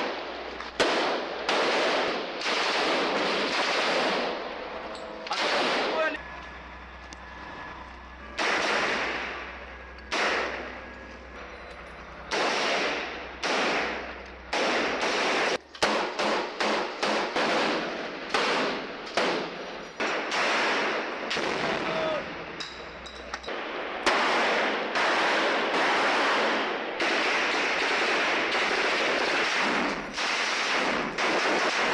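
Rifle fire at close range inside buildings: single shots and rapid bursts, each with a sharp crack and a ringing echo, coming thickest in the last few seconds.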